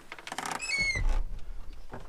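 Dump truck cab door squeaking briefly on its hinge, then low bumps and rumbling as someone climbs up into the cab.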